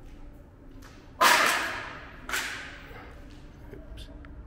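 Two sudden sharp impacts about a second apart, the first much louder, each trailing off briefly in the bare room.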